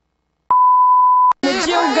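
Countdown leader's steady high beep, held for nearly a second and cut off suddenly; a song with singing starts right after it.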